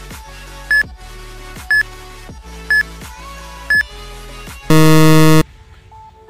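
Countdown timer sound effect over soft background music: four short beeps a second apart, then a loud buzzer lasting under a second as time runs out.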